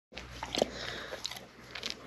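Dog licking and smacking its lips up close: a few short, soft clicks.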